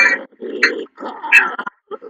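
A person's voice in short, broken vocal bursts with brief gaps between them.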